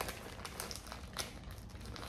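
Thin plastic bag crinkling as a hand digs in and pulls out slices of Swiss cheese: soft, irregular crackles.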